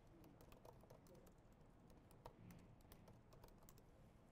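Faint typing on a laptop keyboard: quick, irregular key clicks.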